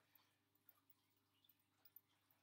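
Near silence, with three faint small ticks as folded paper slips are stirred by hand in a glass bowl.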